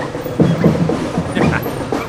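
Marching-band drums beating a quick rhythm of clustered strokes, amid a noisy crowd.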